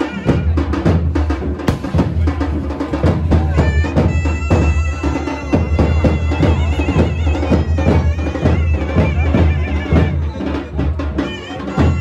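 Festival procession music: a shrill reed wind instrument plays a wavering melody over loud, steady drumming.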